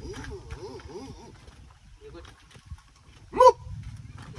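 Maasai men's voices chanting as they walk in procession: a run of short, low calls in the first second, then one loud rising-and-falling shout near the end.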